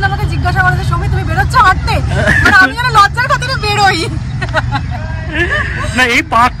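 A woman talking to the camera and laughing, over a steady low rumble in the background.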